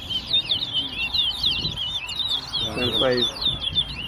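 Caged towa-towa (large-billed seed finch) singing without a break: a fast run of short, sweeping, high whistled notes. A man's voice is heard briefly in the middle.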